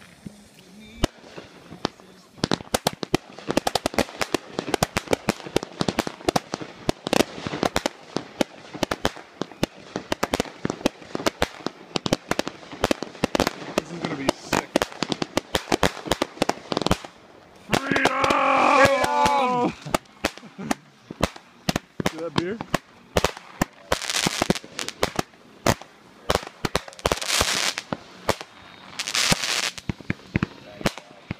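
Consumer fireworks going off: a dense, unbroken run of bangs and crackling reports, with louder clusters of cracks late on.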